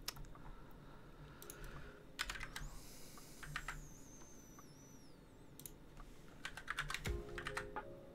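Computer keyboard typing in short bursts of keystrokes separated by pauses, with a longer run of keys near the end.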